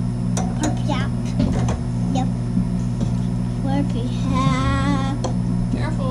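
A steady low electrical hum runs underneath throughout, with a few light clinks from a metal pan lid being handled, and a drawn-out wavering vocal sound from a voice about four and a half seconds in.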